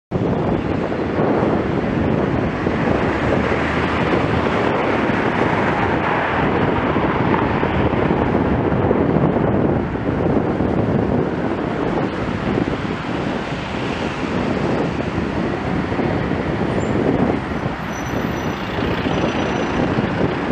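Steady rush of wind over a moving camera's microphone on a road ride, mixed with the noise of traffic passing on wet tarmac.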